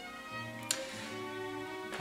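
Quiet background chamber music: sustained notes on bowed strings, moving from note to note, with one brief click under a second in.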